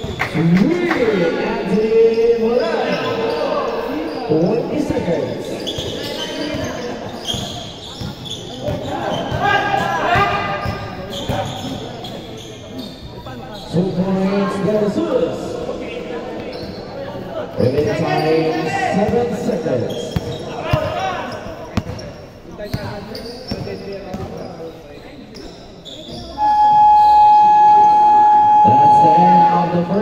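Basketball bouncing on an indoor court while voices call out around it. Near the end a loud, steady electronic horn sounds for about three seconds and cuts off abruptly: the game buzzer, which here marks the end of the period.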